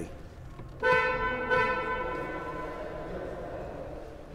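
Kia Cadenza 2019 car horn sounding one steady honk about a second in, its tone fading away over the following two seconds.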